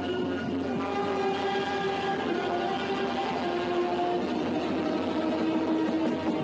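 Saxophone band playing slow, long held notes, several at once, that move to new pitches every second or so.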